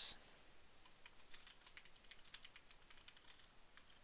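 Faint typing on a computer keyboard: an uneven run of quick key clicks.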